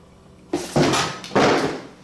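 An iPad Pro retail box and its packaging being handled and set down on a table: loud rustling and scraping in three quick bursts, starting about half a second in.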